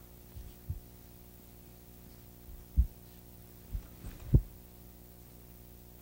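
Steady low electrical hum under a pause in a lecture, broken by about six short, dull low thumps. The loudest thumps come a little before three seconds in and just after four seconds in.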